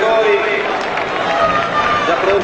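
A man speaking over a public-address system.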